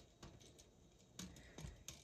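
Near silence, with a few faint short clicks and taps from handling a tape measure against a cardboard model, about one second in and again near the end.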